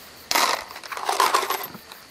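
Loose metal nuts and bolts rattling and clinking in a small container held in the hand, a jangling burst lasting about a second and a half.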